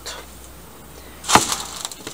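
A single sharp knock of a wooden cutting board against a baking tray, followed by a faint scrape as diced potatoes begin to slide off the board onto the tray.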